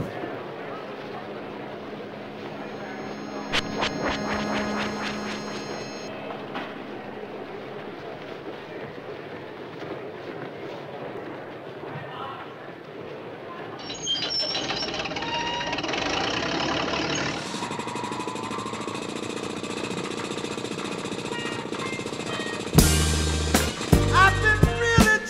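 Cartoon soundtrack of music and sound effects over a steady hum, with a cluster of electronic tones a few seconds in. It grows busier about fourteen seconds in and ends in loud, sudden hits.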